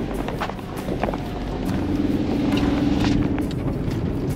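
Cabin noise of a vehicle driving on a dirt road: engine and tyre rumble with a few short knocks, and a steady drone that comes in about halfway through.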